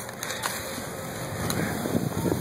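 Steady outdoor background noise with a couple of faint clicks, with no clear single source.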